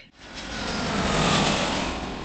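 A vehicle passing by: a rush of noise that swells to a peak about one and a half seconds in and then fades away.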